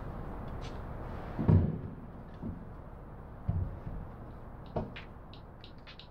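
A few dull knocks and bumps of things being handled on a wooden workbench, the loudest about a second and a half in, over a fading background hiss. Near the end, music with a ticking beat fades in.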